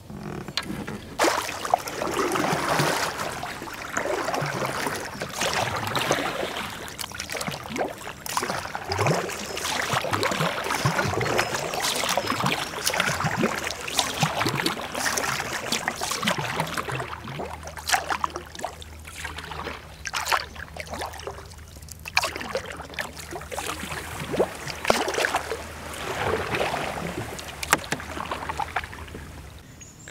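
Kayak paddling: a double-bladed paddle dipping and pulling through river water, with splashing and water sloshing against the hull in an irregular rhythm of strokes.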